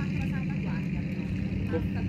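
A steady low engine hum that does not change in pitch or level, with faint voices over it.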